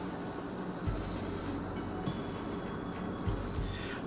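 Quiet background music, with faint clinks of a metal fork against a glass mixing bowl as flour and water are stirred together.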